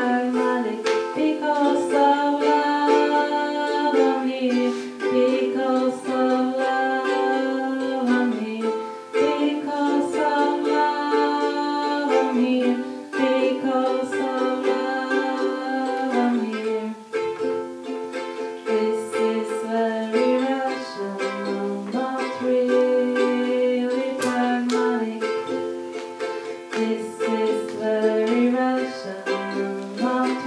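Live song: a woman singing long held notes at a microphone while playing a small plucked string instrument.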